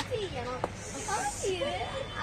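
People's voices close by, with a short high hiss about a second in.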